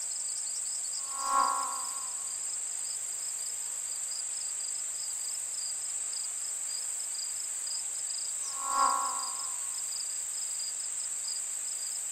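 Background soundtrack of steady, high-pitched cricket-like chirring, with two soft pitched tones that swell and fade, about seven seconds apart.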